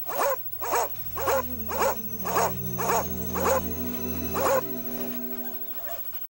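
A Taiwan dog (Formosan mountain dog) barking, about eight barks at roughly two a second, each dropping in pitch, stopping a little past the halfway mark.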